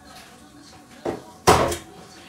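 A short knock about a second and a half in, with a fainter tap just before it, as grocery items are set down on a kitchen countertop.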